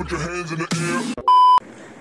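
A short edited-in sound clip ends in a loud, steady electronic bleep about a second and a quarter in. The bleep lasts about a third of a second, like a censor beep sound effect.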